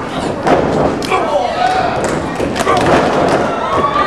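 Wrestlers' strikes and bodies hitting a wrestling ring's mat: several sharp thuds and slams, over shouting voices.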